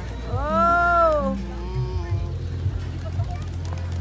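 A high voice calling out one long vowel that rises and falls in pitch, about a second long, over a steady low hum.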